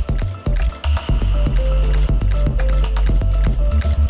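Electronic music played live from a laptop and modular synthesizer: heavy deep bass under a dense pattern of sharp clicky percussion and short pitched synth notes. The level dips briefly at the start, and a held high synth tone sounds for about a second.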